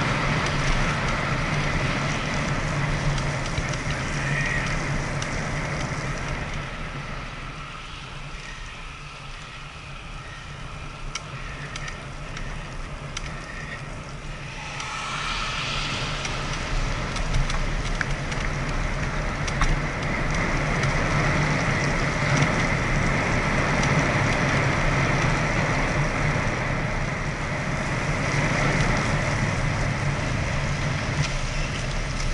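Recumbent bicycle riding along a wet paved path: tyre rolling noise and wind on the microphone, with a steady hum underneath. It drops quieter for a few seconds around the middle and picks up again in the second half.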